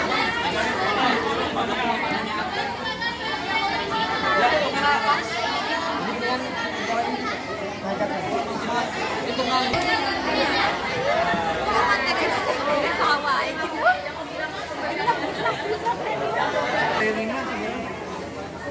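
Many people chattering at once, overlapping voices with no single speaker standing out, at a steady level throughout.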